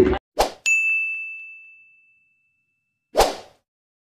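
Subscribe-button animation sound effects: a short swish, then a bright bell-like ding about half a second in that rings out and fades over the next two seconds, and a second swish about three seconds in.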